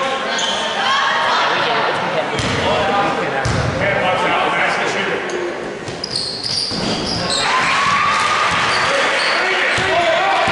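Game sounds in a large, echoing gym: a basketball bouncing on the hardwood floor and sneakers squeaking during play, under the shouts and chatter of players and spectators.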